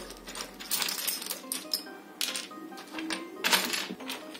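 Small plastic and metal miniature kitchenware clicking and clinking as a hand rummages through a pile of it, in several short spells of clatter, the loudest about three and a half seconds in. Music plays in the background.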